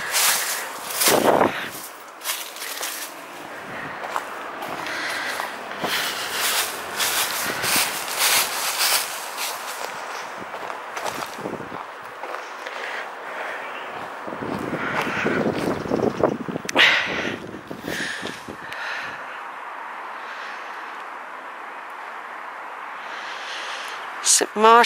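Footsteps on dry leaf litter and grass, a quick run of short rustling steps through the first ten seconds, then sparser. A low rushing swell comes in around fifteen seconds in.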